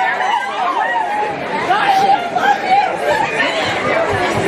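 Crowd chatter: many voices talking over one another in an audience.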